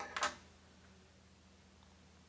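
Snips cutting a starting notch for the ripcord into a loose-tube fiber optic cable's jacket: one quick double click near the start.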